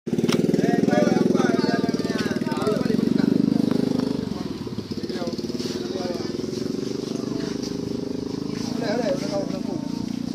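Small motorcycle engine idling steadily, louder in the first few seconds, with men's voices talking over it.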